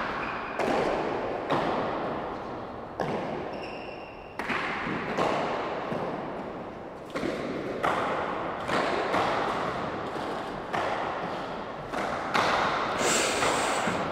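Hardball handball rally: the hard ball cracking off the walls and the players' hands in a run of sharp strikes about one a second, each trailing a long echo off the court walls.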